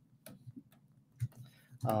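A few faint, irregular clicks from computer input devices, with a man's short "um" just at the end.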